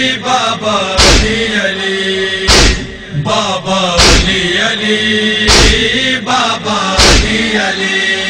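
Voices chanting a devotional noha refrain to a heavy, regular beat that strikes about every one and a half seconds.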